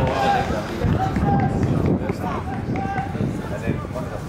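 Indistinct voices calling out several short times, too distant or unclear for words, over a low outdoor rumble.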